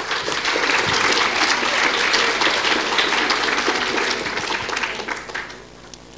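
An audience applauding, the clapping dying away near the end.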